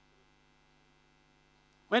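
A pause with only faint, steady electrical mains hum, then a man's voice starts speaking near the end.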